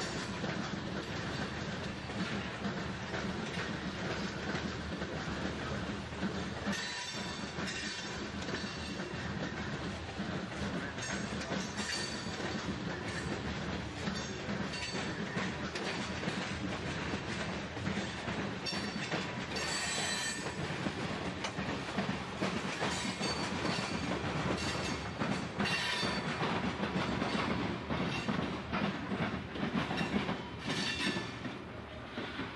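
Freight train of coal hopper cars rolling past: a steady rumble of steel wheels on rail, clicking over the rail joints, with a few louder high-pitched screeches.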